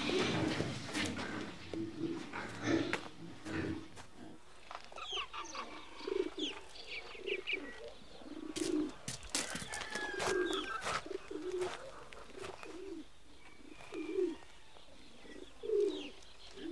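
Pigeons cooing in short low phrases repeated every second or so, with small birds chirping in quick notes in between. A few knocks sound in the first few seconds.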